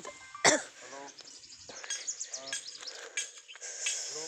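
A person coughing once, loudly and sharply, about half a second in, followed by a few short voice sounds.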